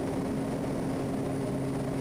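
Quest Kodiak 100's Pratt & Whitney PT6A turboprop engine and propeller, heard in the cockpit, droning steadily at climb power with the propeller set back to 2,000 RPM. An even low hum runs under the drone.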